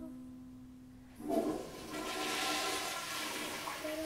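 A toilet flushing: a rush of water starts about a second in, swells, then fades away near the end, over the dying tail of a held ukulele chord.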